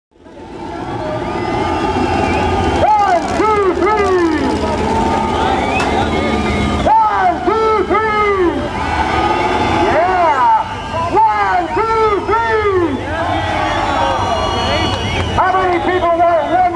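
Air-cooled Volkswagen engine being revved in quick blips, two or three at a time, each rev climbing and dropping back, over a steady low engine drone; the sound fades in over the first second.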